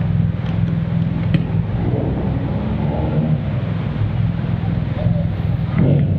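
Motorcycle engine running at low speed with a steady low hum, faint voices in the background.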